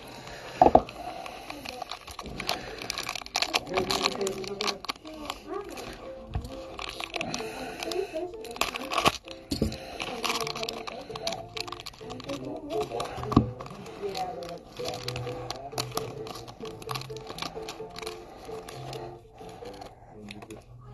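Background music playing while a foil trading-card pack (Panini Impeccable) is crinkled and torn open by hand, giving irregular crackles.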